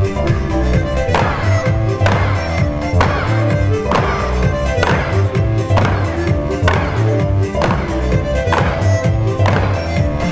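Upbeat electronic pop music over loudspeakers, with a steady low beat and a sharp accent about once a second that falls away in pitch after each hit.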